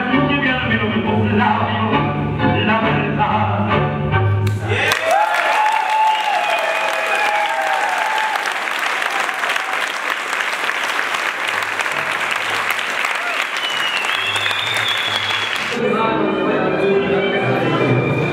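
Recorded tango music played over the hall's speakers ends about four and a half seconds in. A crowd applauds for about eleven seconds, and tango music starts again near the end.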